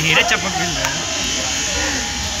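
Voices speaking indistinctly over a steady buzzing noise.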